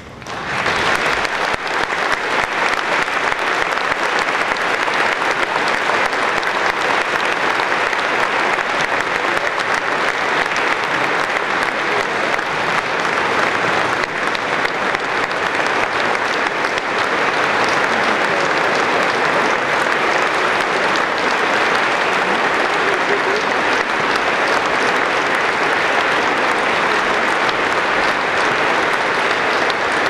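Large congregation applauding in a big church. The clapping swells up within the first second and then holds steady and loud.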